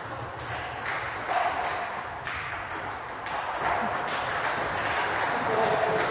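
Table tennis ball clicking off bats and the table during a doubles rally, a sharp click roughly every half second.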